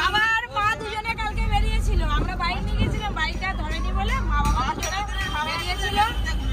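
Raised, high-pitched voices of several passengers calling out together inside a moving vehicle's cabin, over the vehicle's steady low rumble.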